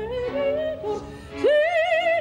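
Female operatic voice singing with a wide vibrato. It is quieter for the first second and a half, then a loud new phrase swoops up and is held high.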